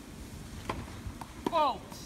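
A short exclamation, "oh", falling in pitch near the end, after a couple of faint knocks.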